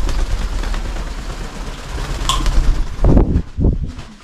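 Wing beats of a green Amazon parrot flying right past the microphone, a loud, rumbling rush of air. A brief high note comes about two seconds in.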